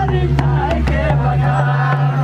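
Adivasi folk dance music: quick hand-drum strokes on a barrel drum (mandar) with singing over a steady low drone.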